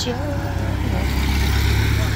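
A minivan driving past close by, its engine and tyre noise rising as it comes level and passes.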